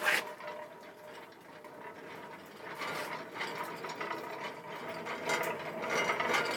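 Wheeled metal kiln rack being pulled out of a pottery kiln: a knock at the start, then steady rattling and clicking of the trolley and its metal frame, louder from about halfway.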